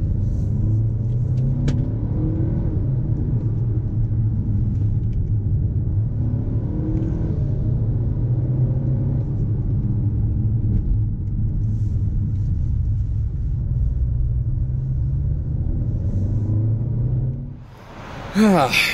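A car driving, heard from inside the cabin: a steady low engine and road rumble, with the engine note rising and falling with the throttle. It fades out near the end.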